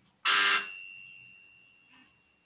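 A sudden loud buzzing alert tone lasting about a third of a second, leaving a single high ringing tone that fades over about a second and a half.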